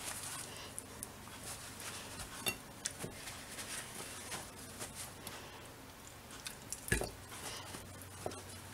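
Paper towel being patted and rubbed over a raw whole chicken on a plate: soft, faint squishy rustling with a few light taps, and a thump against the plate or counter about seven seconds in.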